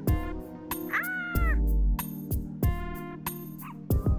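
Background music with a steady drum beat. A short, high call that bends up and then down sounds over it about a second in.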